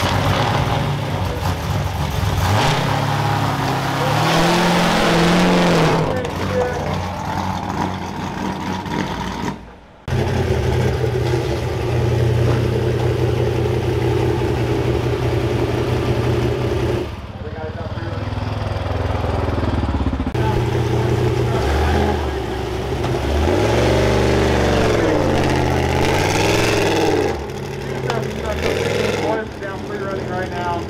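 Off-road race truck engine running at low speed, with the throttle blipped so the revs rise and fall several times; the sound drops out briefly about ten seconds in. Voices can be heard alongside.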